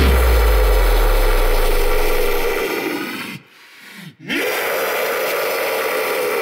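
Deep guttural deathcore growls: one long held growl, a short break a little over three seconds in, then a second long growl from about four seconds in. A deep bass boom at the start fades away over the first two seconds.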